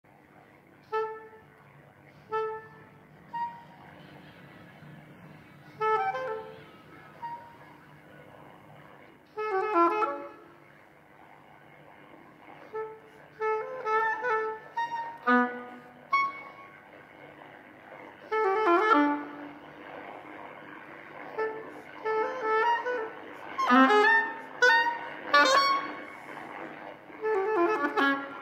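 Oboe playing a slow melody. It opens with short separate notes and pauses, then the phrases grow longer, louder and busier in the second half.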